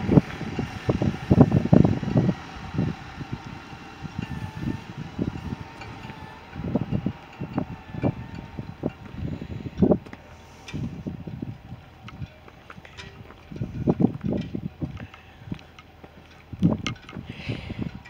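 Footsteps and handling knocks from a handheld camera carried while walking on a gravel path: irregular low thuds, a few of them louder. A faint steady hum runs underneath.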